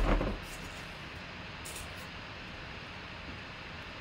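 Steady background hiss, with a short burst of noise right at the start and a faint brief rustle about two seconds in.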